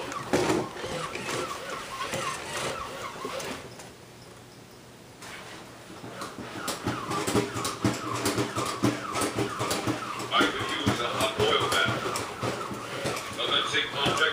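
Toy robot walking across the floor, its motor and feet making a rapid clatter of clicks, which drops away for about a second some four seconds in.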